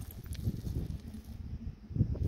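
Wind gusting, which is howling, mixed with a low, uneven rumble of wind against the microphone.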